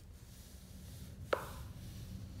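A hand rubbing and pressing on a glossy book page, a soft low rustle, with one sharp tap a little past halfway.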